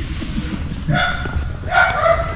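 Chicken calling: two short, high calls, one about a second in and one near the end.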